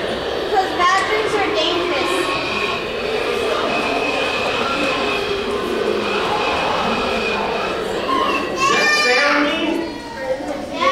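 A room full of children talking and calling out over one another, with louder high-pitched children's voices near the end.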